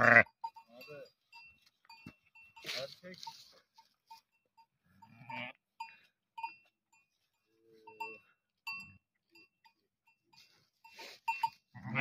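A flock of sheep with young lambs: a few short, scattered bleats, with a small bell clinking now and then. A man laughs at the very start.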